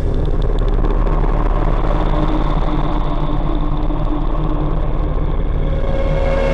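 A steady, loud low rumbling drone with a few faint held tones over it: a suspense sound effect in the background score.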